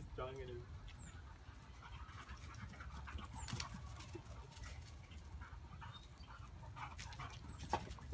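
Faint outdoor ambience: a bird gives three short, high, falling chirps spread a few seconds apart, over a steady low rumble and scattered light rustles and clicks.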